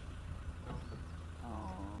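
Faint outdoor background: a steady low rumble with a few faint high chirps, and a faint voice rising near the end.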